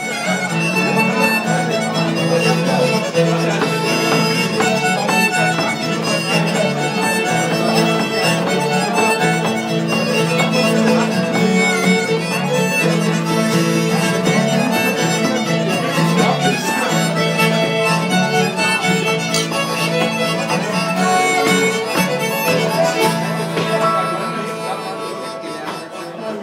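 A live bluegrass band plays an instrumental passage: acoustic guitar strumming with a fiddle carrying the tune. The music tapers off near the end.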